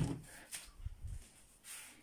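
Faint handling sounds: a light rub of paper and a few soft, low bumps in the first second as printed papers are set down.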